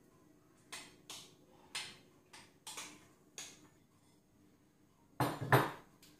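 A spoon scraping and clinking against a glass bowl as thick pastry cream is scooped out, in six short strokes, then two louder knocks near the end.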